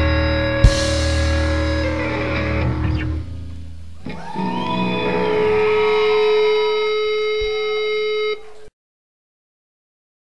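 Live rock band with electric guitars, bass and drums playing a loud closing passage with one sharp drum hit early. The band thins out after about three seconds into held, ringing electric guitar tones with some bent notes. The sound cuts off abruptly near the end, leaving dead silence.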